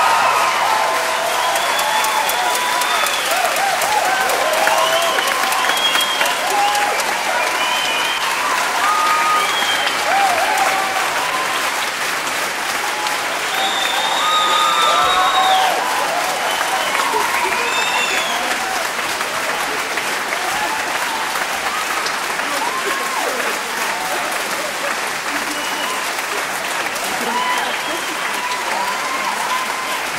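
Concert hall audience applauding and cheering, steady clapping with many voices calling out and cheering over it.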